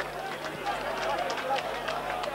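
Rugby ground crowd: many spectators' voices calling and shouting at once, with a steady low hum underneath.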